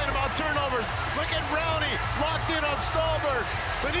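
Hockey play-by-play commentary over the steady background noise of the arena.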